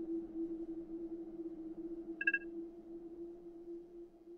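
A steady electronic drone, one held low note over faint hiss, slowly fading, with a short high two-note blip a little past two seconds in.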